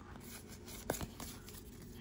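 Faint handling of a stack of Pokémon trading cards, with one sharp light click about a second in.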